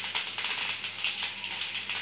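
Hot oil sizzling and spitting in a kadhai as curry leaves, mustard seeds and cumin seeds fry for a tadka, a dense crackle of many small pops.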